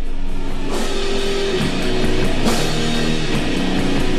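Heavy, slow stoner rock: distorted electric guitar chords held over drums, with cymbal crashes about a second in and again midway.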